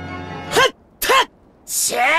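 Two short squawk-like calls from a talking bird character, each rising and falling in pitch. Near the end comes a longer, breathy call sliding down in pitch.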